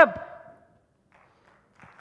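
A voice over a hall's loudspeakers trailing off, its echo dying out within about half a second, then a short near-quiet pause before speech starts again near the end.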